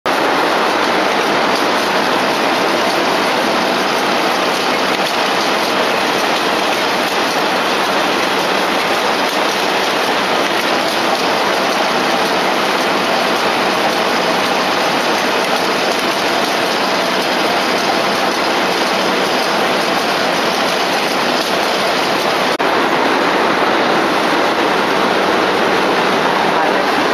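Steady, loud, even din of textile machinery running in a large exhibition hall, an automatic silk reeling machine among it.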